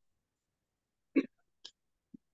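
A single brief vocal sound from a person, about a second in, followed by a short faint hiss.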